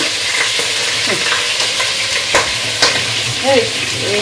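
Chunks of bone-in meat frying in hot oil in a pot, a steady sizzle as the meat cooks off its juices. Two sharp clicks come a little past halfway.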